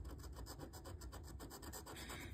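A metal scratcher disc scraping the latex coating off a scratch-off lottery ticket in quick, even back-and-forth strokes, about nine a second, faint.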